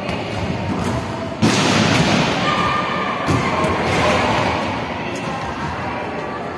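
Volleyballs being hit and bouncing on the court floor in a large echoing sports hall: a loud hit about a second and a half in and another around three seconds in, over the general noise of players.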